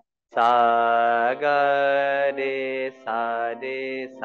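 A man singing long, steady held notes of the sargam scale syllables (sa, re) over a harmonium, in a few phrases with short breaks, after a brief silence at the very start.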